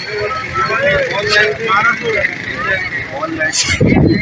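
People talking in the background over steady street-market noise, with a low thump near the end.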